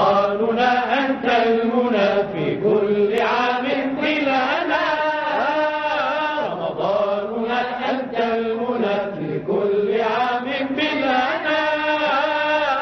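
Chanted Arabic religious song (a Ramadan nasheed), sung with long held notes that waver and glide in pitch.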